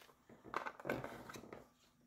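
A few faint clicks and rustles of a small wax-melt jar being handled.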